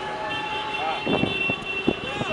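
People's voices calling out in a street, with a steady high-pitched tone held for over a second and a couple of sharp knocks near the end.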